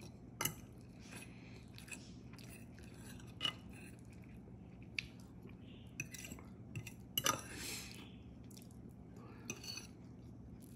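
Stainless steel fork clinking and scraping on a ceramic plate while cutting and picking up pieces of frittata: scattered sharp clicks, the loudest a quick double click about seven seconds in.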